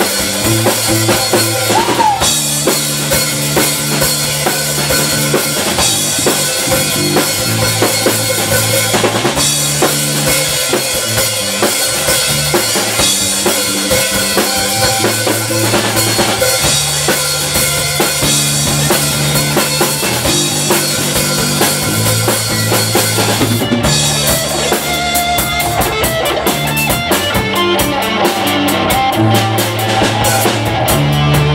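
A live rock band plays an instrumental passage on drum kit, electric bass and electric guitar, with a steady beat and a walking bass line.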